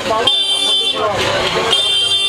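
A vehicle horn sounding twice, two steady blasts of about three quarters of a second each.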